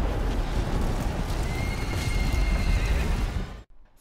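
Horses in a film battle scene: a dense clatter of hooves with a horse neighing, over a deep rumble. The sound cuts off suddenly just before the end.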